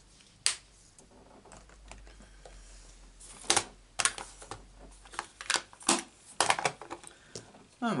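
Irregular sharp clicks and taps of plastic craft supplies being handled on a desk mat: a plastic ink pad moved aside and a glue bottle picked up. One click comes about half a second in, then a quick run of them in the second half.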